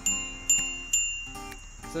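Handlebar bicycle bell on an e-bike rung three times, about half a second apart, each a bright high ding that dies away. Soft background music plays underneath.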